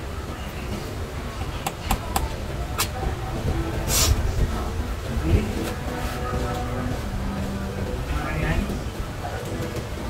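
Hair-cutting scissors snipping: a few sharp clicks about two seconds in and a louder burst about four seconds in. Behind them runs a steady low rumble.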